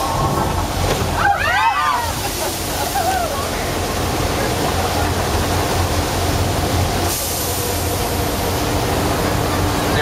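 Flash-flood effect: a large volume of water rushing and splashing down a stone channel in a steady, loud wash. About a second and a half in, a voice calls out briefly, its pitch rising and falling.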